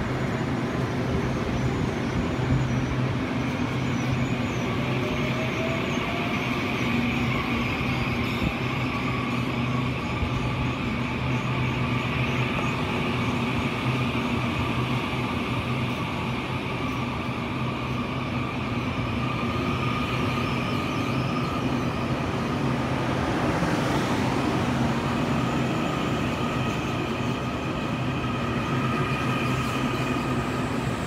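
Taiwan Railways EMU500 electric commuter train at the platform, running with a steady electrical hum, as it gets under way. Faint whines slowly rise in pitch over it, more of them in the last third as the train pulls out.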